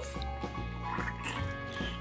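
Background music, with faint bubbling of water as a toy starfish held under the surface fills up and lets out bubbles.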